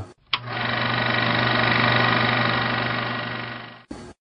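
An electronic buzzing drone sound effect, opening with a sharp click, then swelling to a peak and fading away over about three and a half seconds, with a short blip just after it dies out.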